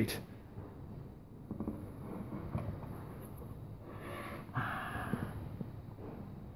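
Faint handling sounds as a cement-sheet-on-plywood bench top is lifted: a few soft knocks, then a short rushing noise about four seconds in.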